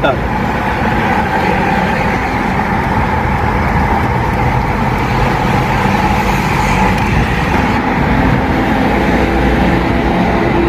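Steady road and engine noise heard from inside a moving car's cabin as it drives along a highway.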